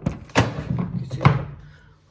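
Handling knocks and thumps on the recording phone as it is set and straightened: three sharp knocks with rustling between, the loudest about a second in.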